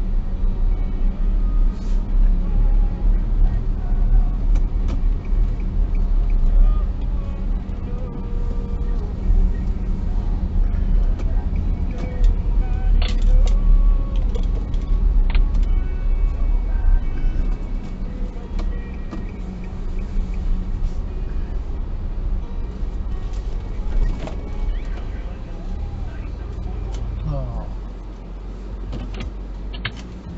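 Car running at low speed, a steady low engine and road rumble that eases off near the end as the car rolls to a stop.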